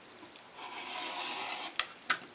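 Olfa 45mm rotary cutter blade rolling through border-print fabric along a ruler edge on a cutting mat: a rasping cut lasting about a second, followed by a sharp click near the end.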